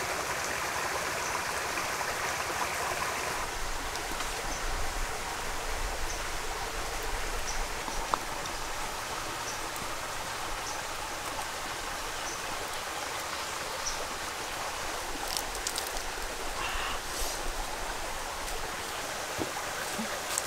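Shallow forest stream flowing steadily, with a few faint ticks and taps over it.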